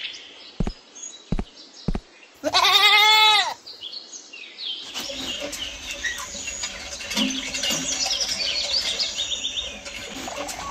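Three light clicks, then a goat bleating once, a call about a second long that rises and falls in pitch. From about halfway a faint steady wash sets in, with many short high chirps over it.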